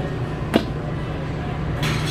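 Stainless steel roll-top chafing dish lid swung shut, landing with one sharp metal click about half a second in. Near the end a rasping slide as another roll-top chafer lid starts to open.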